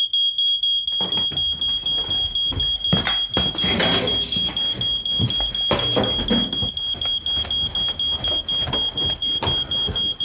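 Domestic smoke alarm sounding a shrill, rapidly pulsing beep, set off by toast burning under the grill. Knocks and metallic clatter come about three and six seconds in as the smoking grill pan is pulled out.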